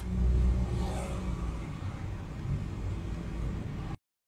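Car driving, a steady low rumble of engine and road noise heard from inside the cabin. It eases after the first second or so and cuts off suddenly just before the end.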